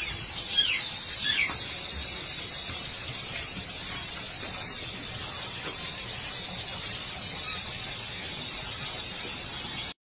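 A steady high-pitched hiss, with a few short falling squeals in the first second or two; it cuts off suddenly at the very end.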